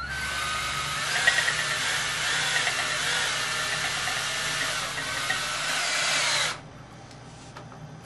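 Electric drill spinning a stirring rod in a carboy of wine, a steady motor whir over churning liquid, degassing the wine and mixing in the clearing agent; it stops abruptly about six and a half seconds in.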